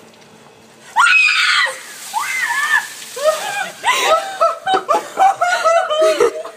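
People screaming high-pitched as ice-cold water is dumped over them in a cold water challenge, starting about a second in after a brief hush and going on in repeated shrieks, with water splashing.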